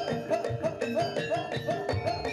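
Live Javanese gamelan music for a jaranan dance: struck metal keys and drums playing a fast, steady beat, with a short melodic figure repeating about three times a second.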